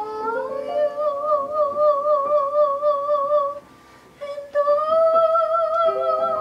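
Soprano voice singing with upright piano accompaniment: two long high notes held with wide vibrato, separated by a short break a little past the middle.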